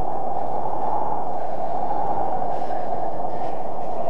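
Steady wind sound effect, a constant rushing noise without a pitch, played for a cold, snowy winter scene.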